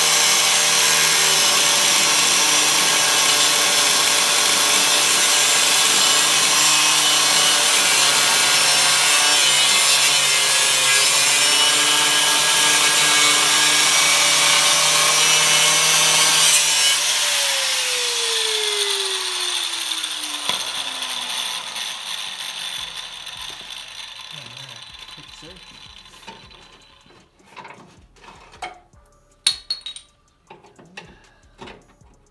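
Handheld angle grinder grinding steel inside a car's front spring pocket, trimming along the weld, running steadily under load. About two-thirds of the way in it is switched off and winds down with a falling whine over several seconds, followed by a few faint clicks near the end.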